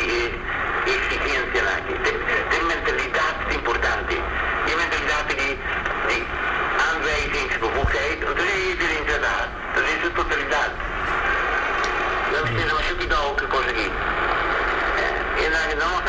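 A person talking continuously, heard through a mobile phone, so the voice sounds thin and narrow, with a steady low hum underneath.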